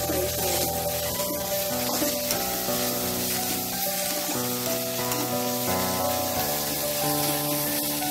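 Sliced onions sizzling in hot oil in a steel kadai while a perforated metal spatula stirs them round the pan.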